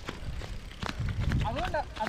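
Low, uneven rumble with scattered light clicks, then a man starts talking about one and a half seconds in.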